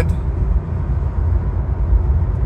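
Steady low road and tyre rumble inside the cabin of a Tesla Model Y electric SUV driving at motorway speed.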